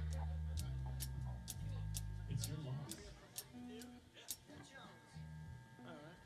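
Quiet band noodling on stage between songs: low bass notes hum and hold for a couple of seconds, then fade, returning briefly near the end. Over them comes a run of light, evenly spaced ticks, about two to three a second, like a drummer tapping.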